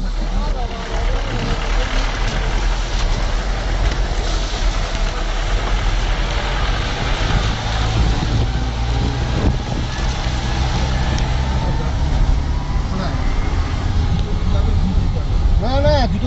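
Engine and road noise of a moving vehicle heard from inside its cabin: a steady low drone under a constant hiss, with faint voices of passengers in the background.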